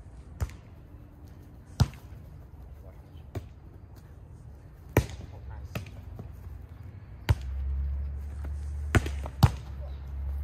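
A volleyball being struck by hands and forearms during a rally: a series of sharp slaps one to two seconds apart, with two close together near the end. A low rumble comes in about seven seconds in.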